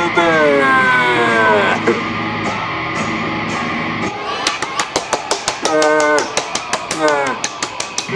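Rock song with guitar and a singing voice; a fast, even drum beat comes in about four seconds in.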